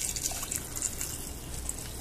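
Water being poured into a glass simmering pot, a steady splashing trickle as the pot fills.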